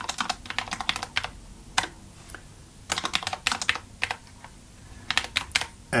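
Typing on a computer keyboard: quick runs of keystrokes in three or four spurts, with short pauses between them.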